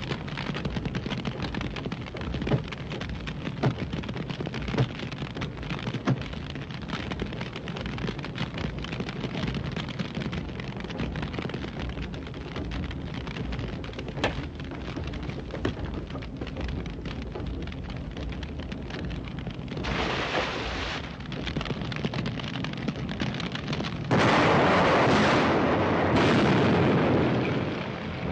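Film sound effects of a burning ship: a steady rumble of fire with a few sharp cracks in the first five seconds, then a short burst of noise about 20 s in. About 24 s in comes a loud blast lasting some three seconds as the ship explodes.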